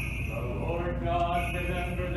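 Orthodox liturgical chanting: a voice sings on long, held notes that step up and down.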